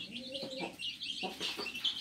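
Chicks peeping continually in short high notes around a feed tray, while the hen gives one low, drawn-out cluck about half a second in.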